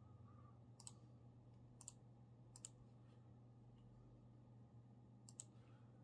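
Faint computer mouse clicks, five in all, the last two in quick succession near the end, over a low steady hum.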